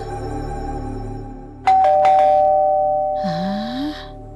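Two-tone electric doorbell chime, a higher ding then a lower dong, both ringing on and slowly fading, over background music.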